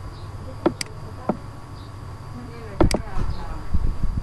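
Several sharp clicks and knocks at irregular moments, the loudest pair close together a little under three seconds in, over a faint steady hum with a thin high whine.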